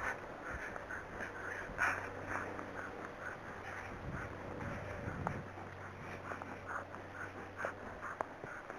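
A horse walking on a grass verge, heard from the saddle: a steady run of soft, irregular clicks and scuffs from its steps and tack, a few each second, with one louder knock about two seconds in.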